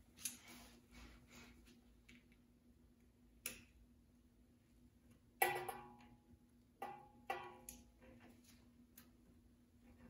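A few faint, sharp metallic clicks and taps of hand tools on steel as a cotter pin is worked out of a castle nut, some leaving a brief ringing, the loudest about halfway through. A low steady hum runs underneath.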